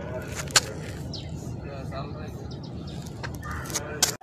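Steady low rushing of turbulent, churning water, with faint voices in the background and one sharp click about half a second in.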